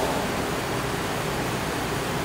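Steady, even hiss of background room noise with nothing standing out from it.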